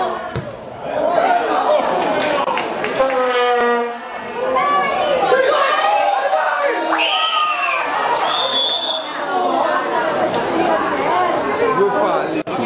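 Overlapping spectators' voices: chatter and shouts, with no single clear speaker. A short, high, steady whistle-like tone sounds about two thirds of the way through.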